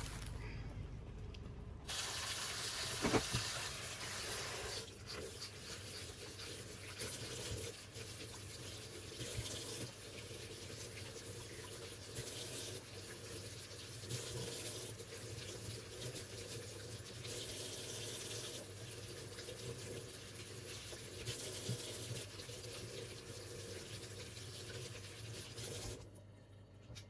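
Kitchen tap running into a stainless-steel sink, starting about two seconds in, while St George's mushrooms are rinsed under the stream by hand; the splashing wavers as the mushrooms and hands are turned in the flow.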